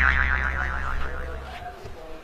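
A cartoon-style 'boing' sound effect: a sudden wobbling, warbling tone over a low hum, dying away over about a second and a half.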